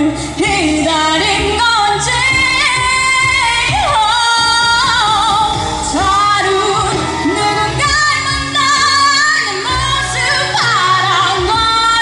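A woman singing a K-pop ballad live into a handheld microphone, with accompanying music, both amplified through the stage sound system.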